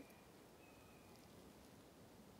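Near silence: faint outdoor background hiss, with a faint thin high tone lasting about half a second, starting about half a second in.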